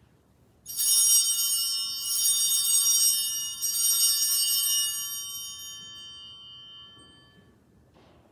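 Altar (sanctus) bells rung at the elevation of the host after the consecration: a bright, high, many-toned jingle struck three times, each ring swelling anew, then dying slowly away.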